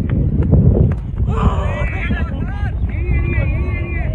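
Wind buffeting the microphone throughout. About a second in, a short sharp crack like a cricket bat hitting the ball, then players shouting to each other loudly.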